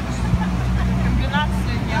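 Tractor engine running steadily while towing a passenger trailer, heard from aboard, with people talking over it.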